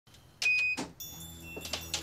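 An electronic door lock gives one short high beep with mechanical clicks of the latch as the door is opened, followed by a few light knocks of the door. Soft background music comes in about a second in.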